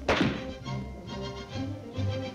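A single rifle shot at the very start, with a short echo, over orchestral background music.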